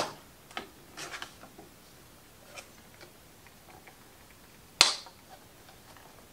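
Metal paint can lid being pried up with a piece of curtain rod hardware used as a makeshift opener: a few light metallic clicks, then one sharp loud click just before five seconds in as the lid comes free.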